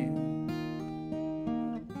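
Acoustic guitar playing a sequence of picked jazz chords, each new chord struck and left to ring, with a brief dip just before a fresh chord at the end.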